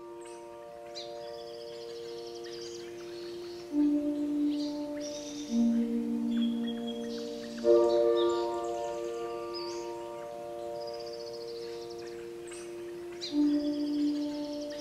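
Ambient music of long held chord tones, with new notes struck several times and the loudest entry just past the middle, layered with birds chirping and trilling.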